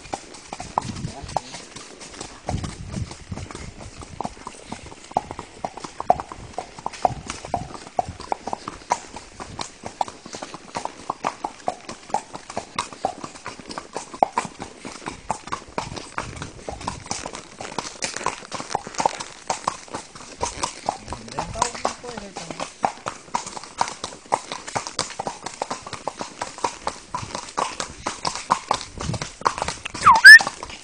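Hooves of a donkey clip-clopping in a steady run of clops as it walks along a road.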